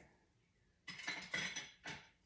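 Light clinks and knocks of dishes and utensils being handled on a kitchen counter: a short run of small clicks starting about a second in, and one more knock near the end.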